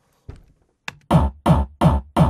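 Short, punchy electronic kick-drum sample, a small top kick meant to add attack when layered over a hardcore kick, played on its own and repeating about three times a second from just past a second in. Each hit has a sharp click and a quick drop in pitch, heard through studio speakers and picked up by a microphone.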